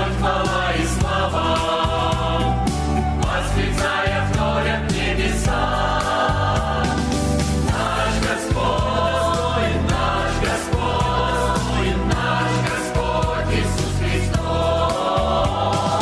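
Mixed choir of men's and women's voices singing a Russian worship song in full harmony, with keyboard accompaniment and a steady pulsing bass underneath.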